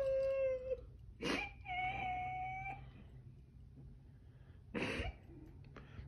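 A girl crying: two drawn-out high whimpering wails in the first three seconds, each sliding slightly down in pitch, with a sharp gasping breath about a second in and another near five seconds.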